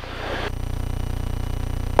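Steady drone of a Beechcraft Musketeer's 160-horsepower piston engine and propeller heard in the cockpit in level flight. It swells slightly over the first half second, then holds even.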